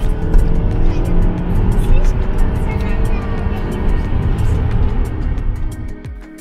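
Car engine pulling hard at full throttle to overtake a lorry, heard loud from inside the cabin, with background music playing over it.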